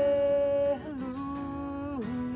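Worship song on acoustic guitars, with a man's voice holding long notes without clear words. The pitch moves to a new, quieter held note about three quarters of a second in.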